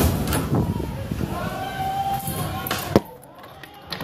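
Rumble of a severe windstorm mixed with knocks and bangs. A sharp bang comes about three seconds in, and the noise then drops off sharply.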